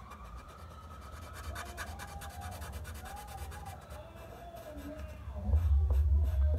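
Sharpie permanent marker scratching and rubbing on paper as a design is coloured in, with a faint wavering tone in the background. A low rumble rises near the end.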